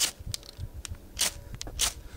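Ferro rod (metal match) scraped hard along a closed Opinel No. 8 carbon-steel knife to throw sparks: three strong scrapes, at the start, just past a second in and near the end, with lighter scrapes between.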